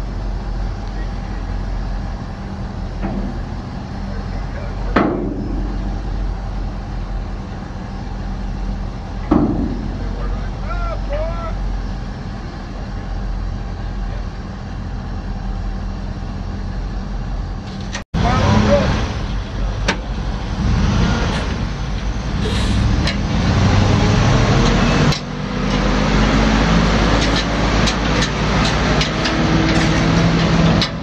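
The dump truck's 8.1-litre V8 gasoline engine running steadily at idle. A little past halfway the sound breaks off for an instant and comes back louder and busier, with many short clicks and knocks over the engine.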